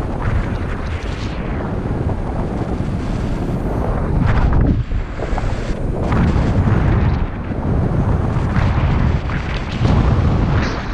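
Wind buffeting the camera microphone in flight under a paraglider: a loud, steady rushing rumble that grows heavier from about four seconds in.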